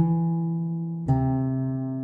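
Guitar fingerpicking a slow melody, one note at a time: a note plucked at the start rings and fades, then a lower note is plucked about a second in and rings on.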